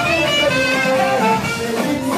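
Live band music in a highlife/Afropop style, with instrumental melody lines at a steady, loud level.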